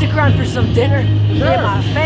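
A person's voice, talking or laughing, over a steady low droning hum.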